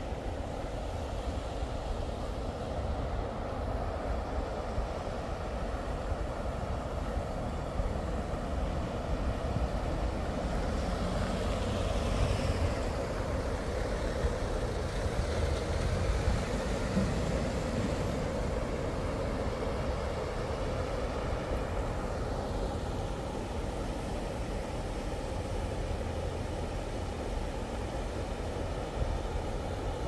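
Steady road traffic noise from nearby bridges, with one vehicle passing a little louder about ten to sixteen seconds in.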